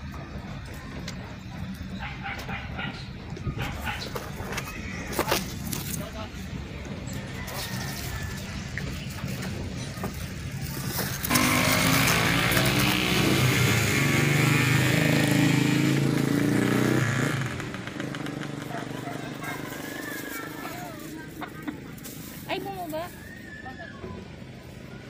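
Vehicle engine running with a steady low hum, growing much louder for several seconds in the middle, then settling back.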